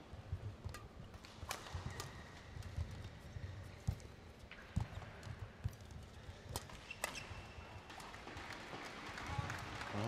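Badminton rally: sharp racket strikes on the shuttlecock at irregular intervals about a second apart, with players' footsteps thudding on the court between them.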